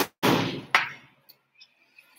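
Handling noise close to the microphone: a sharp knock, a short noisy rush, then a second knock, dying away about a second in.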